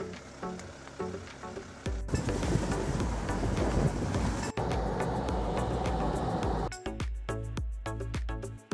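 Background music with a steady beat, joined from about two seconds in by a loud rushing noise that drops away shortly before the end.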